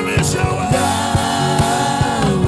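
Live gospel worship music: a man sings into a microphone over instrumental backing with a steady beat, holding one long note through most of it.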